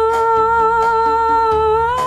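A woman's singing voice holding one long, steady note that lifts slightly in pitch near the end, over a quiet backing track of a Hindi film song.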